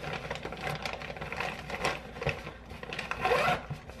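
A fabric lunch bag's zipper being pulled, amid the rubbing and scraping of a plastic food container being handled and packed, with a longer, louder rasp near the end.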